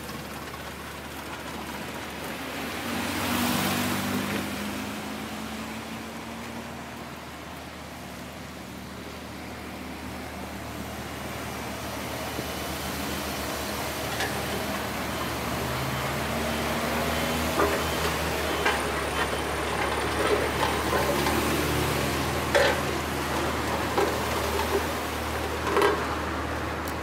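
Road traffic: motor vehicles passing, with one louder pass about three to four seconds in. Engine noise builds again in the second half, with scattered sharp clicks and knocks.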